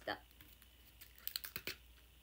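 Plastic salad packaging handled just after being opened: a quick run of small, faint clicks and crackles about a second and a half in.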